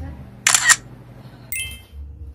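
Camera shutter sound as a group photo is taken: one sharp double click about half a second in. A short, bright, ringing chime follows near the end.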